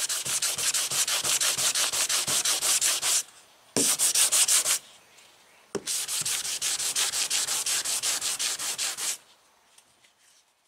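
Sandpaper, about 150 grit, held under the fingers, scraping rapidly back and forth over a car's painted hood, about eight strokes a second. There are three spells, with short breaks near 3 and 5 seconds, and it stops a little after 9 seconds. The paint is being scuffed around a spot so that glaze filler will grip.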